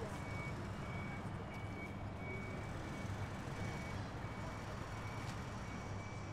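Construction plant reversing alarm beeping on a steady high pitch over the low, steady running of a diesel site machine such as a dumper or excavator.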